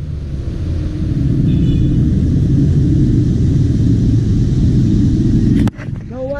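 Steady low outdoor rumble that fades in over the first second, holds, and cuts off abruptly near the end, with a brief high chirp about one and a half seconds in.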